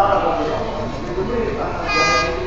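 People talking on a railway platform. Near the end a train horn starts, a steady blast from the approaching train.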